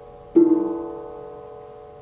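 A single plucked string note or chord sounds about a third of a second in and rings on, dying away slowly.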